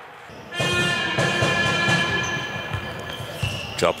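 A short broadcast transition sting: a held chord of several steady tones that sounds for about three seconds, with a sharp swoosh just before the end.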